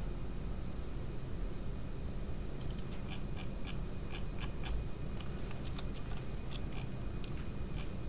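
Computer mouse scroll wheel ticking in short, irregular runs as a web page is scrolled down, starting about two and a half seconds in, over a steady low room hum.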